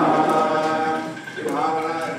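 A group of voices chanting Sanskrit Vedic mantras in unison, on long held notes, with a short pause for breath just past a second in.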